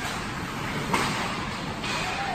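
Indoor ice hockey game noise: a steady hiss of rink sound with one sharp knock of play about a second in.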